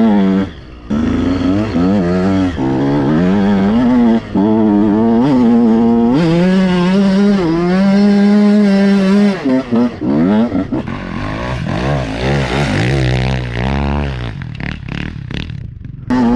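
KTM SX 125 two-stroke motocross engine revving hard under load up a sandy climb, its pitch rising and dropping with the throttle and gear changes. It briefly cuts out about half a second in, and near the end the throttle eases and the engine sound breaks up and falls.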